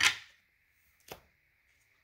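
A deck of tarot cards being handled on a wooden board: one sharp tap as it is picked up, then a fainter tap about a second later.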